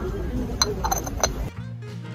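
A ceramic lid clinking lightly three times against the rim of a small ceramic teapot as it is lifted and handled. About one and a half seconds in, background music cuts in.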